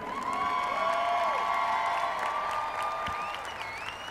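An audience applauding and cheering, with a few drawn-out cheering voices over the clapping, dying down toward the end.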